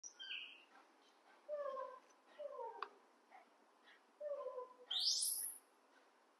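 Young macaques calling: a few short falling coos, then, about five seconds in, one loud high-pitched squeal that sweeps upward.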